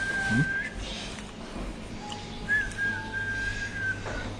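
A steady high whistling tone, held on one pitch, breaks off just under a second in and comes back about two and a half seconds in, running until near the end; a fainter, lower tone sounds briefly between the two.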